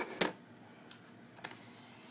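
Small handling clicks from a plastic Android mini PC stick and its cable being worked by hand: one sharp click just after the start and a fainter one about a second and a half in, over quiet room tone.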